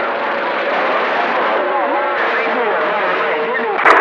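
Radio receiver static: a steady hiss with a steady whistle from an off-tune carrier, and faint, garbled distant voices coming through it.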